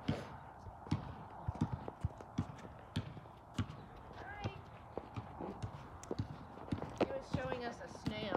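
Footsteps on a hard outdoor surface: irregular knocks about twice a second as someone walks.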